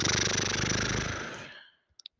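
A man's long, drawn-out exasperated sigh, voiced and breathy, fading out about one and a half seconds in.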